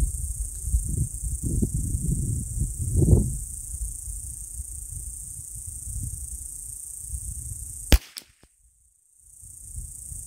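A single .22 LR rimfire rifle shot about eight seconds in: one sharp crack, after which the sound nearly cuts out for about a second. Before it, wind rumbles on the microphone over a steady high hiss.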